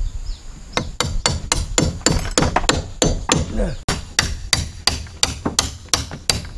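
A hammer striking the timber frame of a wooden hut, a rapid, even run of sharp knocks at about four to five blows a second, starting about a second in.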